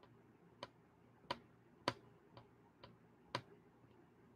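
A series of six faint, sharp clicks, about two a second, in a quiet room.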